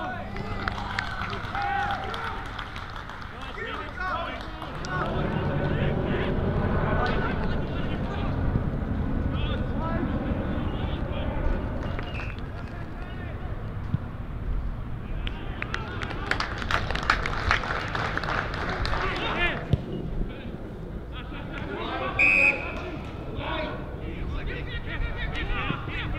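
Indistinct voices of players and onlookers calling across an open football ground, with a short, shrill umpire's whistle blast near the end.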